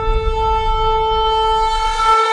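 Intro music: a single long, steady horn-like note held over a deep low rumble.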